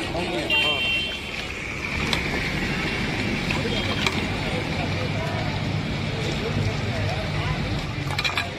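Steady rumble of busy city road traffic, with background voices and a few short clicks.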